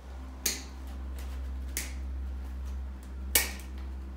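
Wire cutters snipping through the wire stems of artificial flowers: three sharp snips about a second and a half apart, over a steady low hum.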